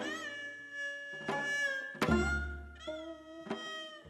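Korean traditional ensemble music: a bowed string line with wavering, sliding pitch over plucked zither notes, with a deep drum stroke about halfway through.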